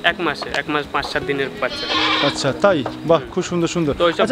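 Goats bleating in a pen, mixed with people talking.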